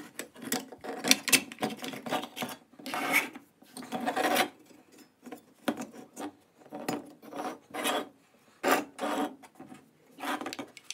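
Parts of a vintage pressed-steel Tonka toy pickup being handled and pulled apart: an irregular series of short scraping and rubbing sounds of metal parts against each other.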